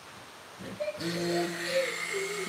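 Stick blender switched on about a second in, its motor then running steadily with a whine and hiss as it blends a pot of soap oils and lye solution.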